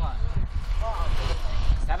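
People's voices talking in short phrases, over a steady low rumble.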